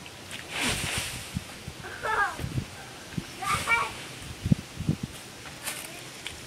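Dry leaves rustling in short bursts as children move through a leaf pile, with a child's short high-pitched calls about two seconds in and again a second later. A few dull thumps near the middle.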